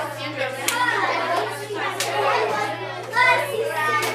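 Many children talking at once in a classroom, a babble of overlapping voices, with a couple of sharp hand slaps about a second and two seconds in.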